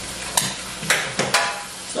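About four sharp clicks and knocks of hard parts being handled and pulled apart for washing in soapy dishwater, over a light steady hiss.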